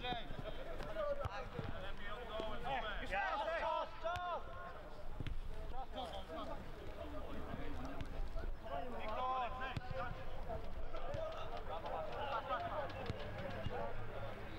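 Footballers shouting and calling to each other across the pitch during play, heard from a distance as loud bursts of voices, busiest about three to four seconds in and again in the second half.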